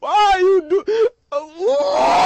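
A high-pitched anime character's voice in short, strained phrases whose pitch slides up and down. There is a brief break just after a second, then a long rising phrase near the end.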